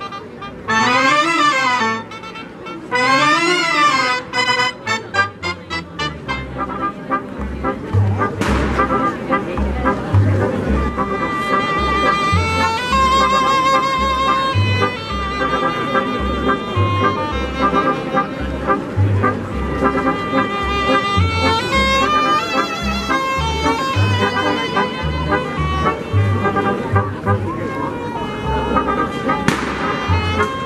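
A cobla playing a sardana outdoors: double-reed tenoras and tibles with trumpets, trombone and fiscorns carrying the melody over a steady double-bass pulse.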